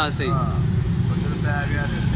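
A man's voice saying a word or two at the start, over a steady low rumble of street background noise, with a fainter voice briefly about a second and a half in.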